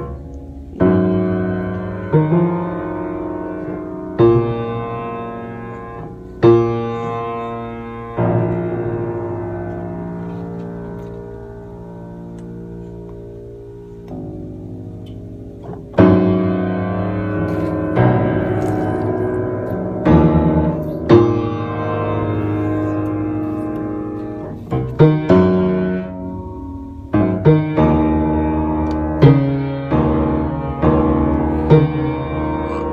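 Upright piano keys pressed by a baby's feet: irregular strikes of several notes at once, each chord ringing and fading slowly. A long fade comes midway with no new strike, and the strikes come quicker near the end.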